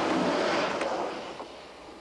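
A vehicle passing close by: a rushing noise that peaks in the first second and then fades away.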